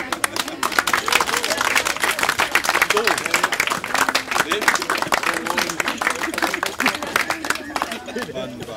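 A small crowd applauding, with dense, irregular hand claps that start suddenly and thin out near the end. Voices chat and laugh underneath.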